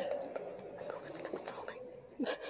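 Faint, low voices of a seated audience murmuring in a hall, with a few small clicks.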